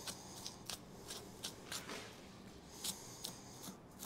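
A knife slicing through a whitetail deer's hide and hair as it is cut free around the front leg: a faint, irregular run of short, crisp snicks.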